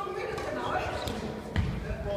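Badminton play on a wooden sports-hall court: a couple of sharp racket hits, then a heavy thud of a foot landing on the wooden floor about one and a half seconds in, echoing in the hall, with voices in the background.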